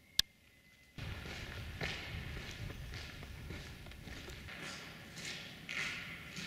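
A single sharp click just after the start, then from about a second in, footsteps on a gritty concrete floor, about two steps a second, inside a bare concrete box culvert.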